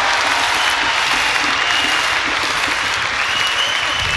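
Concert audience applauding steadily, a dense even clapping from a large crowd.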